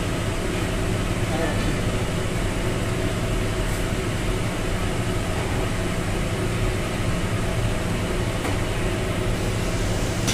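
Steady mechanical hum with an even hiss from a running fan or motor.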